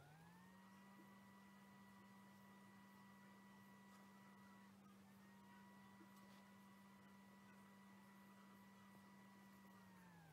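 Near silence with a faint steady hum that slides up in pitch as it comes in, holds, and slides back down near the end.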